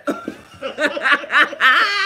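Two women laughing together, loudest near the end.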